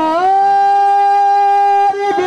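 A man singing a naat, holding one long, steady sung note that rises briefly at the start and breaks off near the end.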